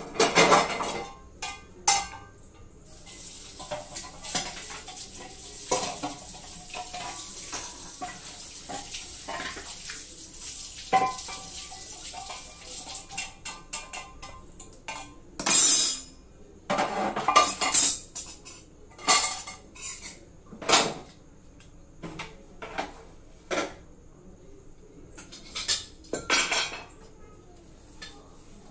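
Stainless steel pots, plates and utensils clanking and clattering as they are handled and set down, in a string of sharp knocks with several louder clangs in the second half. A steady hiss runs underneath from about three seconds in until about thirteen seconds.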